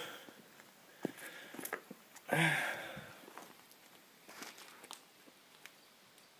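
Quiet handling and movement noise as the camera is carried: a few faint clicks and shuffles, with one short breath-like sound about two and a half seconds in.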